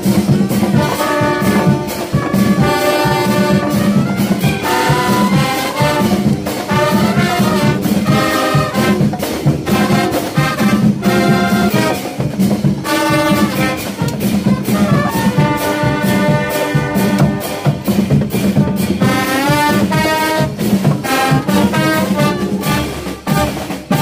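Marching band playing a tune: trumpets, trombones and tubas over snare and bass drums keeping a steady beat. The music dips briefly near the end.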